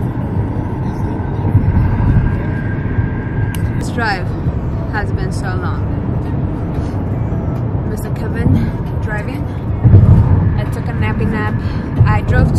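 Steady road and engine noise inside a moving car's cabin at highway speed, a continuous low rumble, with short bits of a voice about four seconds in and again near the end.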